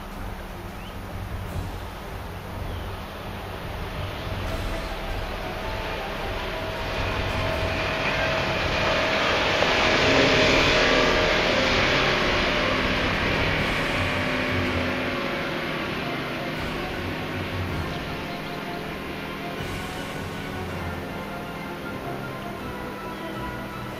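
Motorboat passing by on the river, its engine and hull noise swelling to a peak about ten seconds in and fading slowly away.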